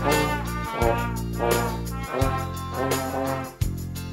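A children's brass group on trumpets and a tenor horn plays a tune together in unison. Underneath, a steady bass accompaniment changes chord about every second and a half.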